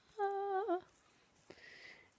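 A woman humming one short held note for about half a second, wavering at its end.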